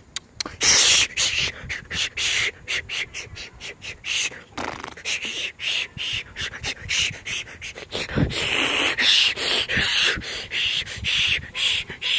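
A person making rapid, breathy hissing and puffing noises with the mouth, in the manner of rough beatboxing: an irregular string of short bursts, several a second.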